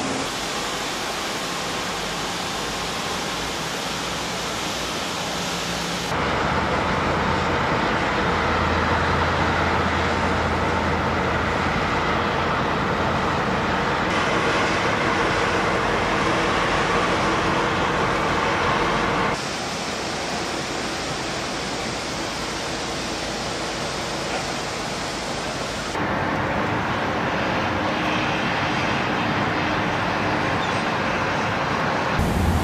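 Steady rushing noise with a faint machinery hum from a large ship and its harbour tugs at the pier. It steps louder about six seconds in, drops back near twenty seconds and rises again near the end.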